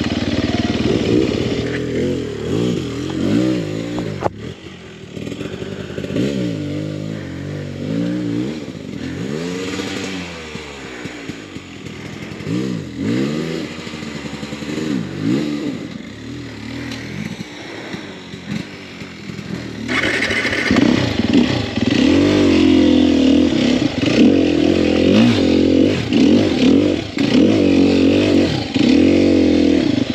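Sherco 300 SEF single-cylinder four-stroke dirt bike engine revving up and down at low speed as it crawls over rocks, with a sharp knock about four seconds in. About two-thirds of the way through it runs louder and steadier at higher revs.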